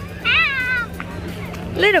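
A child's short, high-pitched squealing cry that falls in pitch, about a quarter second in, followed near the end by a child's voice saying "a little".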